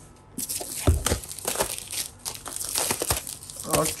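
Plastic shrink wrap being torn and peeled off a cardboard product box, crinkling continuously, with a low bump of the box about a second in.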